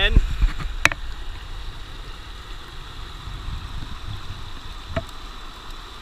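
Steady rush of river water, with a hand scoop digging into gravel in a plastic bucket: a handling rumble at the start, a sharp clink about a second in and a lighter knock near the end.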